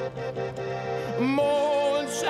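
A slow song in Danish: sustained instrumental accompaniment holds a chord, and about a second in a singer comes in with a rising note held with vibrato.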